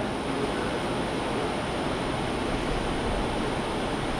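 Steady, even background hiss of room noise, with nothing else standing out.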